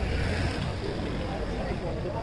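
Busy roadside food-stall ambience: steady low traffic rumble with voices in the background.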